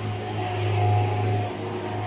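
A steady low hum with faint, higher steady tones above it, swelling and easing slightly in level.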